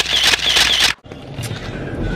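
A loud, noisy sound effect from an inserted meme clip, lasting just under a second and cutting off suddenly.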